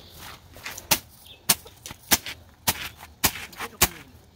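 Machete slashing at grass and striking the dirt ground, six sharp strokes about every half second, starting about a second in.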